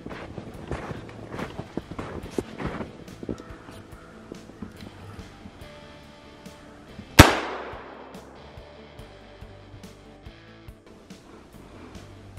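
A single .410 shotgun shot about seven seconds in, sharp and loud with a short ringing tail, over quiet background music.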